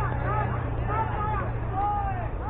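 Young ballplayers' voices calling and shouting across a youth baseball field, several short high-pitched calls scattered through the moment, over a steady low hum.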